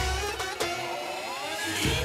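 Live wedding band music on an electronic keyboard: a drum beat with a strike at the start and another just after, then a gliding, bending melodic run while the beat drops back, and the beat returning near the end.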